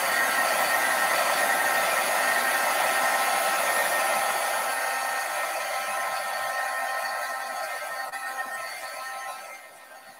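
Handheld craft heat tool running: a steady rush of blown air with a motor whine, setting freshly applied oxide ink on cardstock. It fades over the last few seconds and cuts off near the end.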